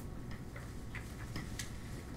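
A few faint, irregularly spaced light clicks over low room noise.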